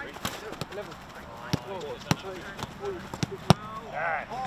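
Football being struck by players' boots in a quick one- and two-touch passing drill on grass: a run of sharp thuds about every half second, the loudest near the end, with players' shouts between.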